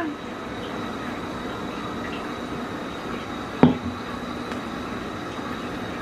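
A person drinking a smoothie, sipping and swallowing, over a steady background hiss, with one short sharp sound about halfway through.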